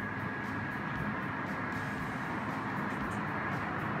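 A steady background hum with a thin, high whine over it that fades out near the end.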